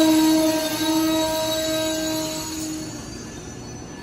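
Amtrak Amfleet coaches' brakes and wheels squealing as the train slows to a stop: a steady, loud squeal made of several tones that fades out about three quarters of the way through as the cars come to a stand.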